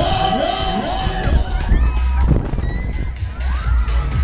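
Loud fairground ride music with a heavy bass that swells about a second in, with riders screaming and whooping over it as the ride spins.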